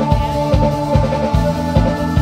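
Live instrumental rock band playing: a drum kit keeps a steady beat of kick-drum hits, under electric guitar and keyboard holding long notes.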